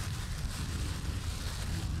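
Steady low rumble of wind on the microphone, with no distinct events.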